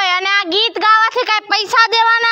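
A child singing in a high voice, holding level notes with short breaks between them.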